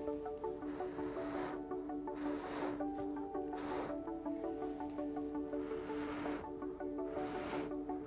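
Background music with steady held tones, over several short puffs of breath, each under a second, blown across wet acrylic paint to push it over the canvas in a Dutch pour.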